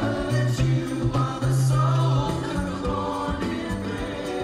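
Live rock band playing, with backing singers singing harmonies over electric guitar, held bass notes and cymbals.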